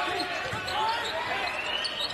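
Live basketball game sound on a hardwood court: a basketball bouncing under the steady murmur of the arena crowd.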